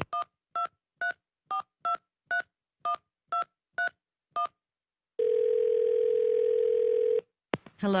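Touch-tone telephone being dialed: ten short two-tone keypad beeps about half a second apart, then one steady ring of about two seconds as the call rings through.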